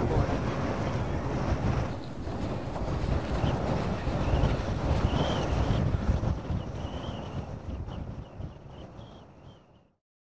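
Wind buffeting the microphone: a gusty rumble that fades out near the end.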